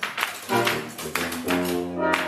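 Wind quintet playing a swing piece: a run of short, clipped notes with sharp attacks, over a low sustained line.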